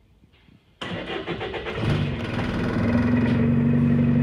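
A single-deck bus's diesel engine starting, heard from inside the bus: a sudden burst about a second in, then the engine catches and settles into a steady idle that grows louder.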